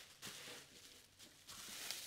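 Faint rustling of a thin plastic carrier bag being folded in half and smoothed flat by hand, in two soft patches about a quarter second in and near the end.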